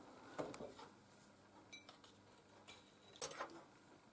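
A few faint clinks of a metal fork against a ceramic plate, with near silence between them.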